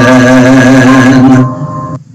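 A man holds a sung note at the end of a phrase of a show tune, over backing music. The held note fades about a second and a half in, leaving the music quieter, and the sound almost drops out near the end.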